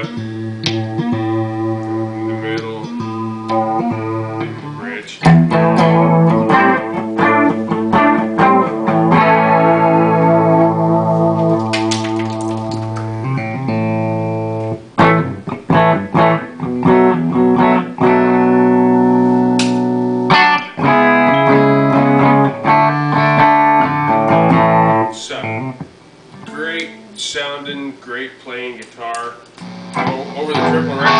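2003 PRS Custom 22 Artist electric guitar with Dragon II humbucking pickups, played through an amplifier: a run of sustained notes and chords. A loud attack comes about five seconds in, and the playing turns quieter and sparser over the last few seconds.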